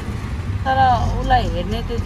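Auto-rickshaw running along a street, heard from the passenger seat as a steady low engine and road rumble. A voice talks over it from under a second in.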